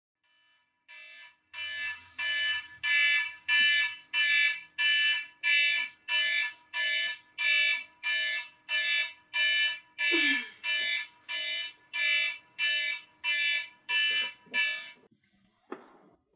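Electronic alarm clock beeping: a steady run of short high beeps, about two a second. They stop about fifteen seconds in.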